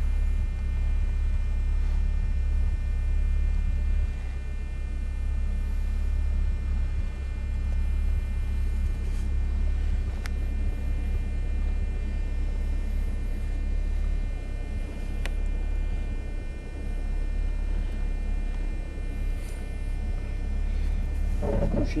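Steady low rumble of a vehicle driving slowly over a rough dirt road, heard from inside the cab, with a couple of faint knocks.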